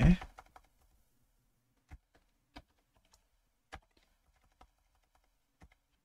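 Unhurried typing on a computer keyboard: about six separate key clicks at uneven intervals, with short pauses between them.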